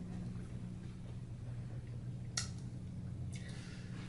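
Quiet room tone with a steady low hum, broken by a single short click a little over two seconds in and a brief soft hiss near the end.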